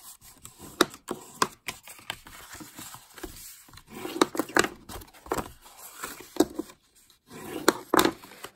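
Cardstock being folded along its score lines and creased with a bone folder: a run of sharp taps and clicks with short rubbing scrapes of the paper.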